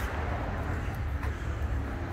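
Steady low background rumble, with light handling noise from a phone camera carried while walking.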